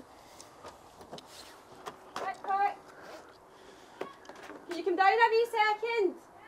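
Voices at a doorway: a short burst of speech about two seconds in, then a loud, high-pitched voice calling out over the last second or so. A few faint taps come before it.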